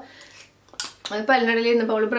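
A metal spoon clinks once, a little under a second in, followed by a woman's voice held on a fairly steady pitch.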